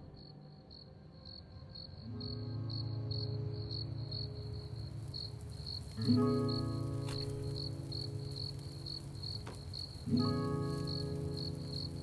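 Crickets chirping in a steady, even pulse, a few chirps a second. Under them, sustained musical chords swell in about two seconds in, and are struck again more sharply around six and ten seconds in.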